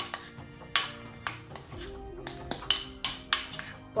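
A metal spoon stirring thick whipped cream in a glass bowl, clinking against the glass at irregular moments, about eight to ten times. Soft background music plays underneath.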